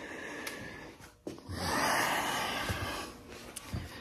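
A man's heavy breaths out, a sigh: a fainter one first, then a longer, louder one starting about a second in.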